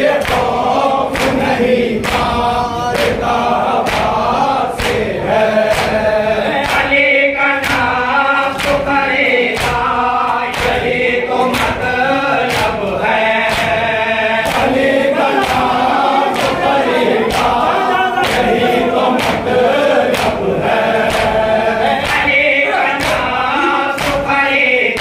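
A group of men chanting a noha (Shia mourning lament) in unison behind a lead voice, with rhythmic matam: open-handed chest beating, about one and a half strikes a second, keeping time with the chant.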